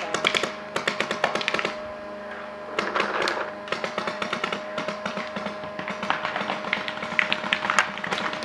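Paintball markers firing in rapid strings of pops, several shots a second, in bursts with a short lull about two seconds in. A faint steady tone runs underneath.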